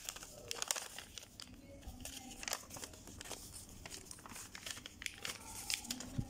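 Green craft paper rustling and crinkling as it is folded and creased by hand into a paper bag, in short irregular bursts.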